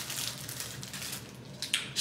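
Clear plastic wrapping crinkling as a pair of sunglasses is pulled out of it, with a couple of sharp clicks near the end.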